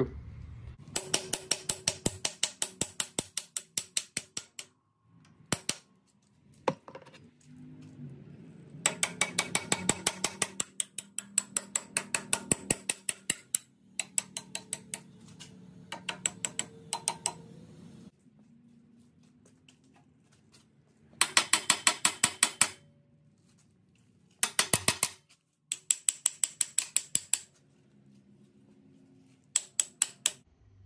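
Steel pivot pin of an excavator thumb being driven back through its bore with rapid hammer blows, metal on metal. The blows come in several bursts of quick, even strikes with pauses between.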